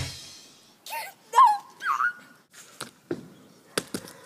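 Three short, high whining calls that slide up and down in pitch, like a dog's whimper, come about a second in. A few light taps follow near the end.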